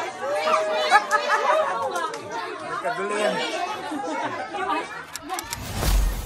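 Several people talking over one another around a birthday cake. Near the end a loud, low rushing burst cuts in.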